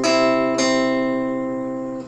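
Lumanog acoustic guitar fingerpicking a C major chord one string at a time: two plucked notes about half a second apart, ringing over a low sustained bass note and slowly fading.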